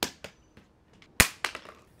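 Compact LED work lights dropped from 15 feet hitting bare concrete: a sharp clack right at the start and a louder one a little over a second in, each followed by a few smaller clatters as the lights bounce and settle.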